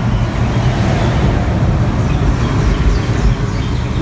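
Steady low rumble with hiss, the background noise of an outdoor balcony.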